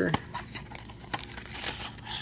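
Cardboard trading-card hobby box being torn open by hand and its contents pulled out: scattered tearing, crinkling and small clicks.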